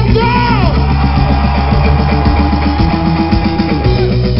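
Rock band playing live and loud, drum kit and bass keeping a steady beat, with one long note held from about a second in.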